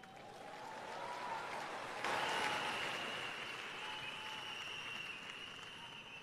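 Church congregation applauding after a point in a sermon, swelling about two seconds in and then easing off, with a faint steady high tone running through it.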